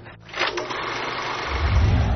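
Old film projector running, a steady mechanical whirr. A deep low boom swells in near the end and is the loudest part.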